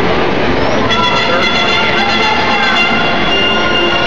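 Live instrumental music playing long held chords, loud and echoing, over the murmur of a large crowd; the chord changes about a second in.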